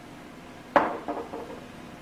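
Kitchenware clinking against glass: one sharp knock with a short ring about three-quarters of a second in, then a few lighter clinks.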